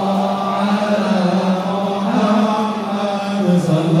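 A congregation of men chanting an Islamic devotional dhikr in unison, the voices holding long sustained notes over a steady low drone, with a dip in pitch near the end.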